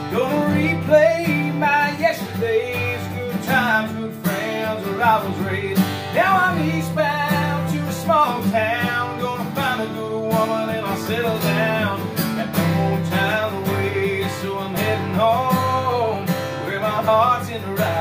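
A man singing a country song while strumming a steel-string acoustic guitar in a steady rhythm.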